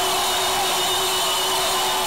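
Electronic music from a live concert: a loud, hiss-like noise wash over a steady low drone, with a wavering tone above it.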